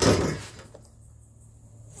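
A brief sliding scrape as a sheet of metal is pushed across the paper plans on the workbench, fading within about half a second, then quiet room tone.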